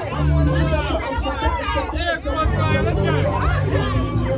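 Loud party music with a heavy bass line, under a crowd of many overlapping voices talking and shouting.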